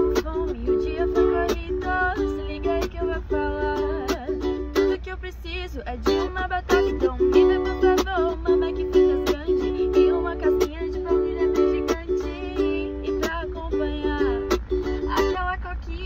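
A woman singing a pop melody in Portuguese to her own steadily strummed ukulele, the lyrics ordering large fries and a cold sugar-free Coke.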